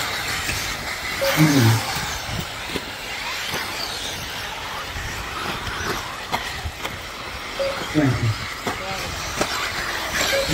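1/8-scale off-road RC buggies racing on a dirt track, a steady mix of motor and tyre noise, with brief voices about one and a half seconds in and again near eight seconds.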